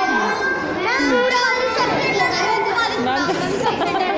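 Many children's voices talking over one another at once, a steady mass of chatter.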